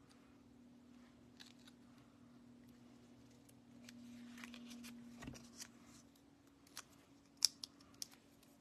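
Faint paper handling: card-stock die-cuts pressed down and shifted by hand on a craft mat. A soft rustle builds about halfway through and ends in a low thump, followed by a few light clicks, the sharpest a little before the end.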